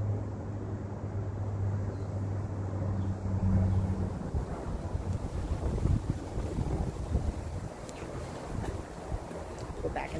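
A steady low hum for about the first four seconds, then uneven, gusty low rumbling of wind buffeting the microphone.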